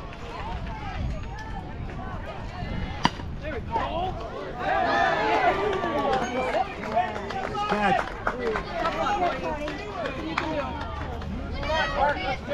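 A single sharp crack of a bat meeting the ball about three seconds in, followed by spectators and players shouting and cheering. Low wind rumble on the microphone throughout.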